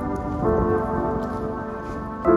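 Background music: sustained keyboard chords that change to a new chord about half a second in, over a low, rain-like noise.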